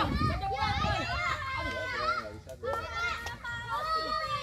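A group of children talking and calling out over one another while they play, with some drawn-out calls.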